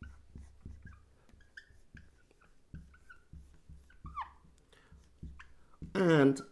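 Dry-erase marker squeaking and tapping on a whiteboard as lines and coils are drawn: many short squeaky strokes, with one longer falling squeak about four seconds in.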